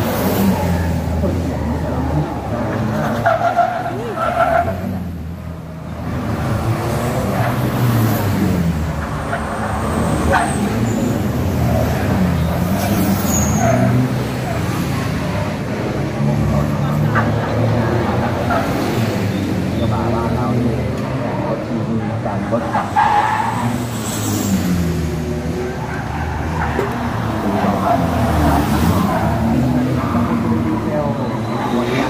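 Race cars running past on a street circuit, their engines rising and falling in pitch several times as they go by, over a steady background of voices.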